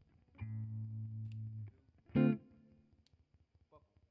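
Electric guitar played solo through an amplifier: a chord held for about a second and a half, then a single sharp strummed chord a little after two seconds that rings and fades away.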